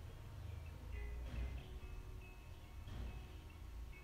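Faint background music with light, bell-like mallet notes, over a low steady hum.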